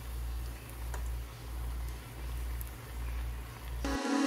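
Bolinhos de chuva (batter fritters) frying in a small pot of hot oil, a steady sizzle under a low rumble, with a few faint clicks of a fork against the pot.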